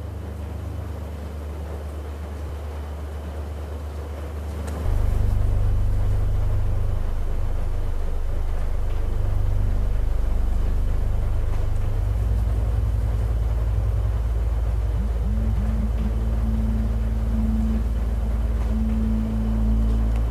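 Deep, sustained drone tones that swell noticeably louder about five seconds in. In the second half a higher tone comes and goes above them.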